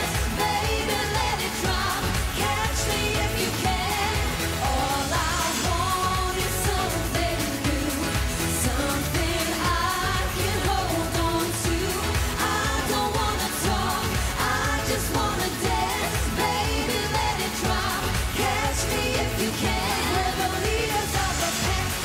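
Upbeat dance-pop song performed live: a group of women singing into microphones over a backing track with a steady, driving beat.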